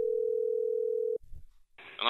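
A single steady telephone line tone, one low beep held for about a second and a half that cuts off a little over a second in, heard between recorded phone calls.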